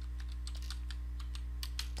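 Computer keyboard typing: a quick run of keystrokes as a word is typed, over a steady low hum.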